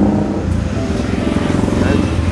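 Road traffic: motor vehicle engines running with a steady low rumble.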